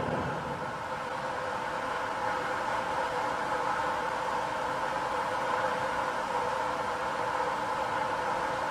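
Steady background noise of an indoor pool hall: an even hiss with no distinct sounds standing out.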